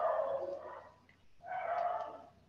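Two drawn-out animal cries in the background, each lasting about a second, with a short gap between them.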